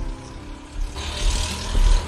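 Street traffic noise, a vehicle passing: a hiss builds about a second in, over a steady low rumble.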